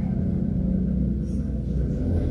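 A steady low rumble with a constant hum underneath, holding an even level throughout.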